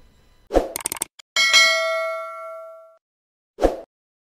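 Outro sound effect for a logo end card: a short hit and a few quick clicks, then a bell-like ding that rings for about a second and a half and fades away, and a second short hit near the end.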